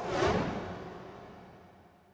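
Closing logo sting: a short musical hit with a whoosh that swells up just as the logo lands, then fades out over about two seconds.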